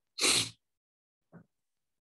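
A single short, loud burst of breath from a person, with a much fainter, shorter one about a second later.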